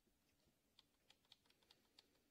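Near silence with faint computer keyboard clicks: about a dozen quick key taps in the second half, as keys are pressed to cycle through open windows in the task switcher.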